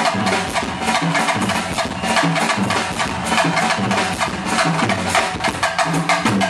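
A Bulgarian wedding-music band playing live, a busy drum-kit beat under the melody instruments.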